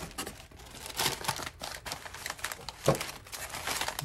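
White packing paper crumpling and rustling as it is pulled out of a cardboard box and handled, in irregular bursts. There is one sharp tap about three quarters of the way through.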